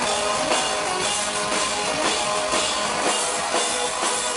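A live industrial rock band playing loud through a club PA, with heavy drums and extra hand-struck drum hitting a steady beat about twice a second.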